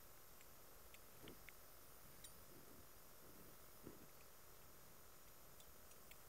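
Near silence with a few faint, light clicks and scrapes of a metal spatula against a small glass vial and plastic funnel as powder is scooped out.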